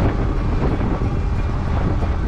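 Steady, loud low rumble of wind buffeting a handlebar-mounted camera's microphone, with tyre noise on asphalt as a bicycle rolls along.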